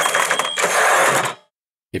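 Transition sound effect: a dense burst of noise with a thin high steady tone in its first half second. It cuts off abruptly about a second and a half in, and a man's voice starts at the very end.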